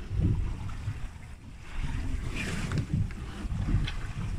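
Wind buffeting the microphone on a small boat at sea: a low, irregular rumble.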